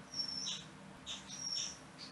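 Faint squeaky strokes of a stylus writing on a tablet screen: a few short, high squeaks, about one every half second.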